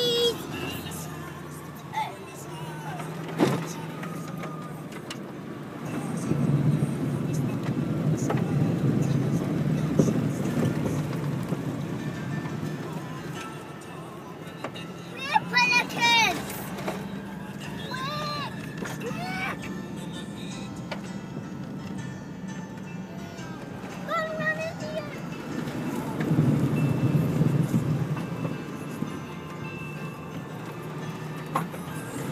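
Four-wheel drive's engine and tyres on a dirt road, heard from inside the cab as a steady low rumble that swells twice, with one sharp knock a few seconds in. Short high-pitched voices break in around the middle.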